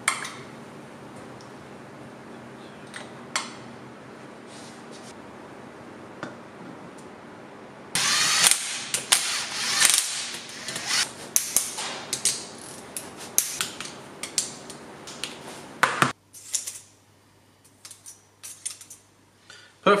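Cordless drill/driver running in bolts on a Subaru boxer cylinder head with its camshafts in place. From about eight to sixteen seconds, the whirring motor and metal rattles and clicks come in quick runs. Before that there are a few soft metal clicks over a steady hum, which stops at about sixteen seconds.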